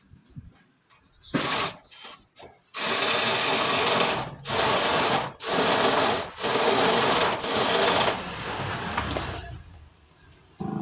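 Cordless drill driving a reciprocating-saw adapter head, cutting into a wooden post. Two short bursts first, then steady cutting in runs broken by brief pauses about once a second, trailing off near the end.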